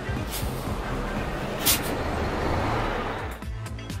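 Bus and road traffic noise, a steady low rumble with a short sharp hiss about one and a half seconds in, under background music.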